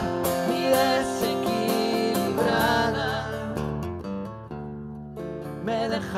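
Live acoustic guitar strumming under a woman's voice holding long sung notes with vibrato. The voice drops out for a couple of seconds near the end, leaving the guitar quieter, before the music swells again at the next line.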